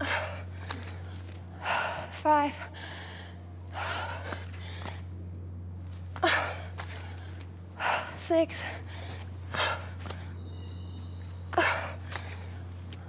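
A woman breathing hard from exertion during burpees: heavy, loud breaths every second or two, with a couple of short strained voiced gasps, over a steady low hum.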